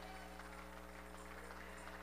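Near silence with a faint, steady mains hum from the church's sound system.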